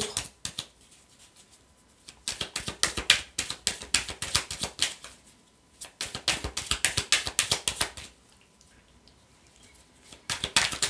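A deck of oracle cards being shuffled by hand: two spells of rapid clicking, the first starting about two seconds in and the second after a short pause, ending a little after eight seconds.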